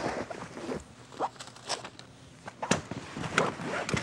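Picnic gear being packed into a canvas tote bag by hand: items scraping and shifting against the fabric and plastic wrapping, with a handful of irregular light knocks as things settle into the bag.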